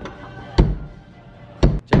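Drum kit played during a band's sound check, heard as the venue door opens: a single hit about half a second in, then two hits close together near the end.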